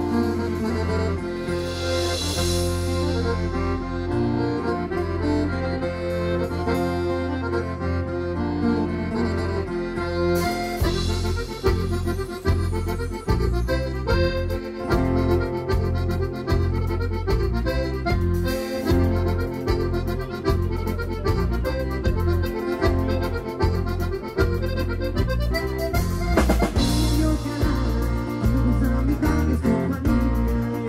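Live band music led by an accordion-like melody over bass guitar and keyboard; a steady beat joins about ten seconds in.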